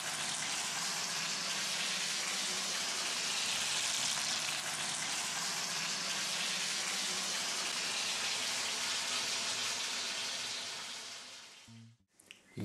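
Breaded fish sticks frying in oil in a pan: a steady sizzle that fades out near the end.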